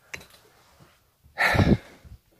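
A man's short, breathy exhale close to the microphone about one and a half seconds in, over quiet room tone.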